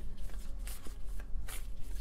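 A tarot deck being shuffled by hand: a soft, irregular rustle of cards with a few light ticks.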